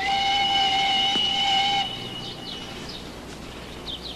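Steam train whistle sounding one steady blast of nearly two seconds, which then fades out.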